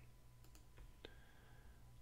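Near silence: room tone with three faint, brief clicks near the middle.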